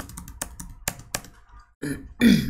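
Irregular clacking of computer keys: several quick keystrokes in the first second, then a few more spaced out, over a faint steady low hum.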